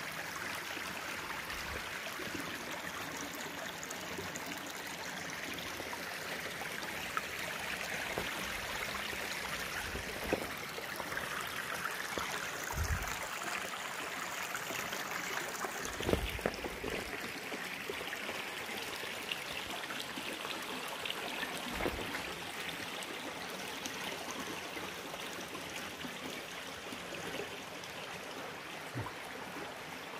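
Shallow mountain stream running over rocks and stones, a steady rush of water, with a few dull thumps now and then.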